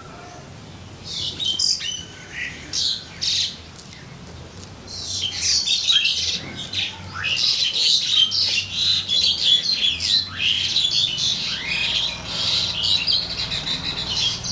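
Birds chirping and calling, a few scattered calls at first, then a near-continuous chatter of high chirps from about five seconds in.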